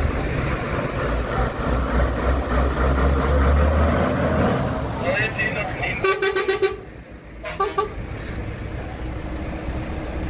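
Refuse truck's diesel engine rumbling low as it drives past. A horn then sounds: a blast of about half a second, and a second, shorter toot a little over a second later.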